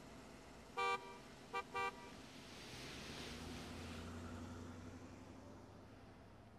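A horn honking: one honk about a second in, then two shorter honks close together, all at one steady pitch.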